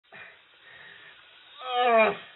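Faint hiss, then a loud pitched cry that swells in about one and a half seconds in and slides down in pitch as it peaks.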